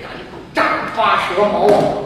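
A man's voice, speaking loudly and animatedly on stage, starting about half a second in.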